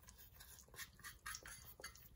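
Near silence: a faint sizzle of butter melting on low heat in a frying pan, with a few soft ticks.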